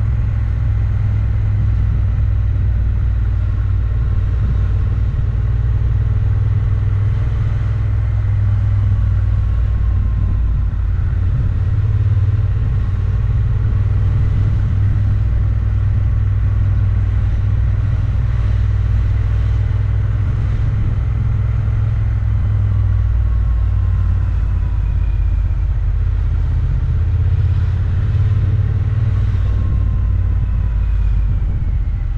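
Motorcycle riding along at steady road speed, heard from a microphone on the bike: a steady low rumble of engine and road, with the engine note drifting slightly up and down as the speed changes.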